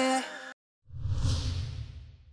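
The tail of a pop song stops about half a second in; after a short gap, a whoosh sound effect for the logo sting swells up with a low rumble underneath and fades away over about a second and a half.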